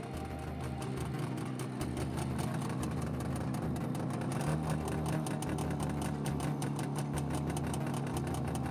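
Wheeled forest harvester's diesel engine running steadily, with a rapid, even ticking over it.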